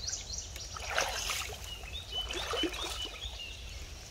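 Water splashing and sloshing as a striped bass held in shallow river water is revived and kicks free, with the heaviest splashing about a second in.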